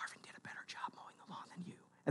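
Faint whispered speech.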